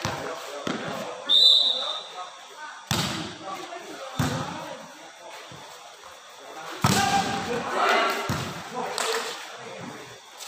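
Volleyball rally: a short whistle blast about a second and a half in, then the sharp thuds of the ball being struck, about three hits, under players' shouting voices.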